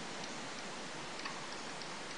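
Steady faint hiss with a few faint, irregular clicks of a computer mouse being worked.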